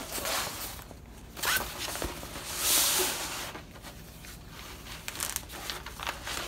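Protective parchment cover sheet on a diamond-painting canvas rustling and crinkling as it is handled and peeled back by hand, in several bursts, the longest and loudest about three seconds in.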